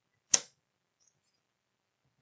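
A tarot card laid down on the table with a single short, sharp slap.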